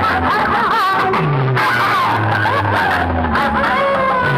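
Loud, steady music played through a stack of horn loudspeakers, with low bass notes under a wavering, gliding high melody line.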